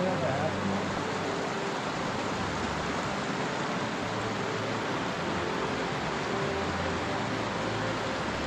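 Steady rushing of a shallow mountain creek flowing over rocks and around a logjam.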